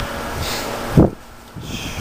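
Handling and wind rustle on a handheld camera's microphone as the camera is swung, with one loud low thump about a second in.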